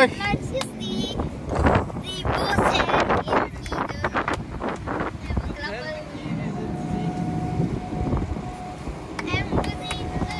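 Voices chatting on a car ferry's open deck, with wind on the microphone and the ferry's engine rumbling underneath. In the second half a steady hum with a thin constant tone comes up as the ferry manoeuvres toward the landing.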